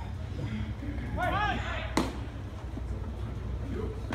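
A baseball smacks into a leather glove on a catcher's throw down to second base: one sharp pop about two seconds in. Just before it comes a short shout that rises and falls in pitch, over general chatter from the field and stands.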